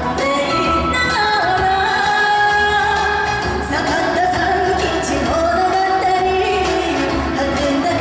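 A woman singing a Japanese song into a microphone, her long held notes wavering with vibrato, over instrumental accompaniment with a steady beat.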